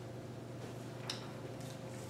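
Quiet classroom room tone with a steady low hum, and a few faint taps and shuffles of a person walking, about a second in and again near the end.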